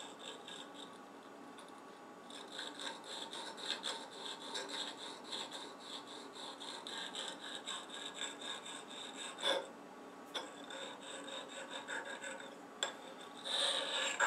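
A small hand file scraping along the edge of a milled steel block, deburring it, in quick repeated strokes that start about two seconds in and stop shortly before the end, with a sharp click partway. A louder scrape near the end comes as the block is shifted in the vise.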